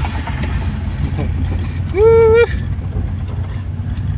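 Steady low rumble of road and engine noise inside a car's cabin at highway speed. About two seconds in, a brief loud pitched sound rises slightly, holds for half a second, then stops suddenly.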